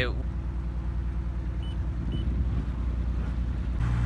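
A trawler's inboard engine running steadily as the boat cruises, a constant low drone.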